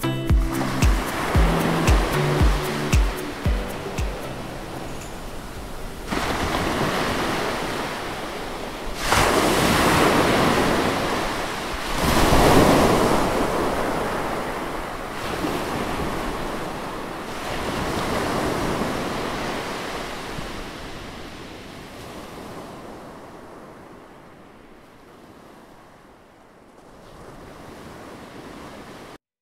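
Ocean surf: waves breaking and washing up a sandy beach, coming in surges with the loudest about ten and thirteen seconds in, then slowly fading away. Music with a steady beat ends in the first few seconds.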